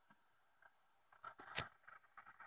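Near silence, then a few light clicks from the controls of an old radio scanner being handled, the sharpest about one and a half seconds in.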